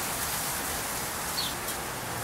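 Meat sizzling on an open gas grill: a steady hiss, with one short high chirp a little past the middle.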